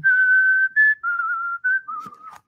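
A man whistling a short tune: a long held first note, then a brief higher note and a few lower, slightly wavering ones.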